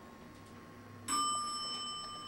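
Elevator arrival chime: a single bell-like ding about a second in, ringing on and slowly fading.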